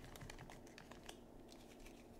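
Faint clicks and light rustling of trading cards being handled and gathered into a stack.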